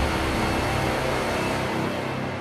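Intro music for a TV channel's logo animation: a loud, dense, noisy swell with a steady low drone underneath.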